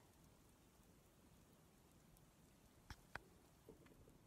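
Near silence: faint outdoor room tone, broken by two short, faint clicks about three seconds in and a couple of softer ticks just after.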